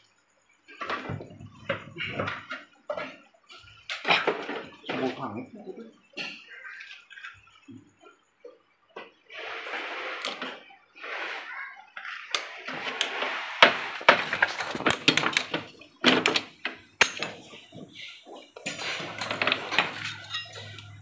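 Metal parts of a car's automatic transmission, the clutch drum and its clutch plates, clinking and knocking as they are handled and pulled from the transmission case. The clinks are irregular and come more often in the second half.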